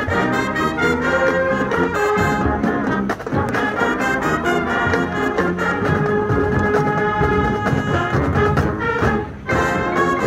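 Marching band playing live, with brass chords over drums, and a short break in the sound about nine seconds in before it comes back in.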